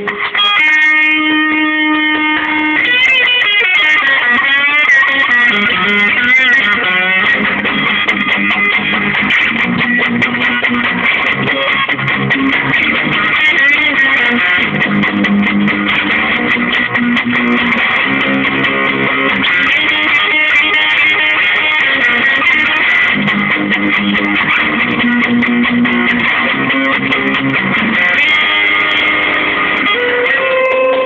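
Cheap distorted electric guitar playing a garage-punk riff over a kids' drum machine. It opens on a held chord, moves to bent, wavering notes for a few seconds, then settles into a repeating riff on low notes.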